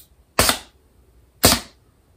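Small pneumatic air cylinder switched by a solenoid valve on a compressor air line, firing twice about a second apart: each stroke a sharp, loud bang that dies away quickly.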